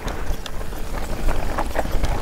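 Mountain bike ridden fast down a dirt singletrack, heard from a helmet-mounted camera: a steady wind rumble on the microphone, with tyre noise and small irregular knocks and rattles from the bike over bumps.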